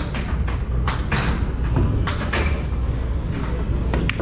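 Busy bowling-alley game-room din: a steady low rumble with a series of short knocks and clatters.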